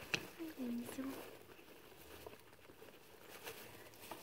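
A guinea pig eating hay: faint crunching and rustling of dry hay as it pulls and chews strands. A brief soft murmur of a voice comes in the first second.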